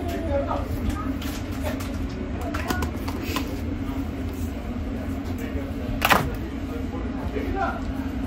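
Measuring cup and sweetener being handled over a stainless-steel mixing bowl: soft scrapes and light taps over a steady low hum, with one sharp knock about six seconds in.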